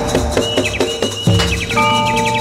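Live Javanese gamelan music for a masked dance troupe: a quick run of drum strokes, about four a second, in the first second, then short high chirping, whistle-like notes in the middle and again near the end.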